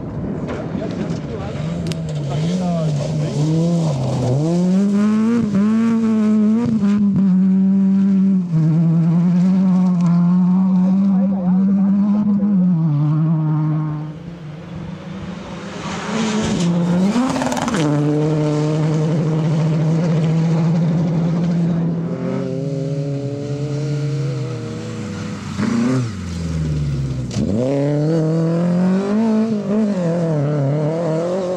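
Rally cars at full throttle on a gravel stage, one after another: engines held at high revs with quick gear changes, the pitch dropping sharply as each car goes by.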